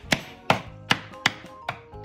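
A claw hammer driving a nail into a wooden birdhouse kit: five quick, evenly spaced strikes, about two and a half a second, each with a short ring.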